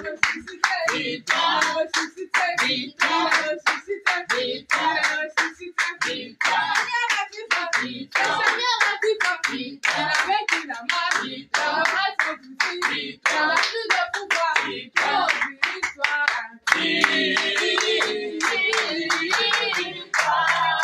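A small congregation clapping hands in a steady rhythm, a few claps a second, while singing together in a small room. Near the end the singing becomes fuller and louder.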